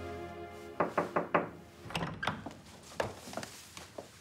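Music fades out, then four quick knocks land on a wooden palace door about a second in. Scattered lighter clicks and knocks follow as the door opens and people step in.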